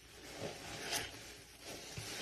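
Laundry detergent paste being worked by hand: a few short, noisy scraping and squishing strokes, the sharpest about halfway through.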